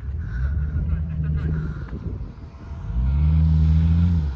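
Jeep Wrangler engine working hard as it climbs a soft sand dune under load. A low engine note is heard, then about three seconds in it rises in pitch and grows loud, holding steady there.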